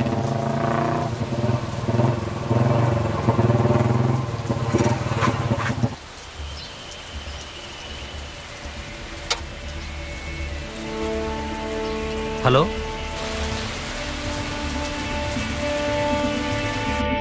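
Motorcycle engine running at low revs, which stops abruptly about six seconds in. After that comes rain, and then a film score of sustained tones.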